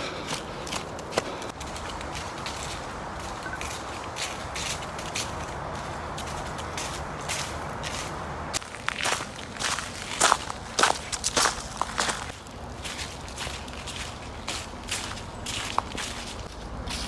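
Footsteps crunching through dry fallen leaves on a trail, irregular crackling steps that grow louder for a few seconds past the middle.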